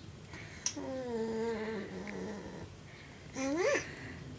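A voice hums a long 'mmm' that drifts slightly down in pitch, just after a brief click. Near the end comes a short vocal sound rising in pitch.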